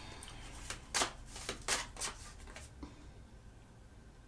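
A deck of tarot cards being shuffled by hand: a handful of short card-on-card rustles in the first three seconds.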